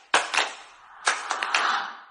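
Sound effects for an animated broadcast title graphic: a quick run of sharp hits and swishes, fading out near the end.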